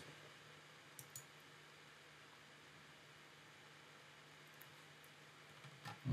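Near silence: room tone with a faint steady hum, and two faint computer-mouse clicks about a second in.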